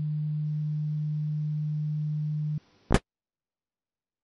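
Steady low tone in the received audio of an SDR receiver tuned to the 10-metre amateur band, cutting off suddenly about two and a half seconds in. A click and a short burst of noise follow, then the audio goes silent as the received transmission ends.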